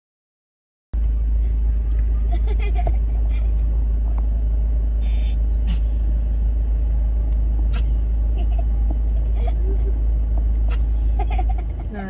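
Steady, loud low rumble of car engine and cabin noise picked up by a phone filming from inside a car, starting about a second in, with faint voices now and then.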